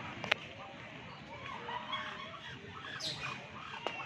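Outdoor pond background of distant voices and bird calls, short curved calls coming most in the second half. There is a sharp click shortly after the start and another near the end.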